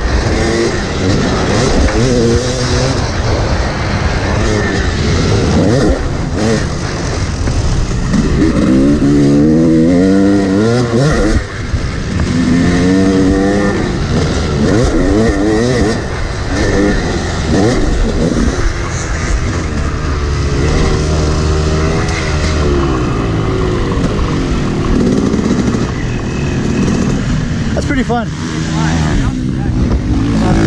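Yamaha YZ250 two-stroke motocross bike ridden hard, its engine note climbing as the throttle is opened and falling off when it is shut, again and again.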